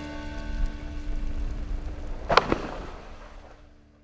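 Background music with sustained tones, fading out steadily toward silence, with one sharp hit about two and a half seconds in.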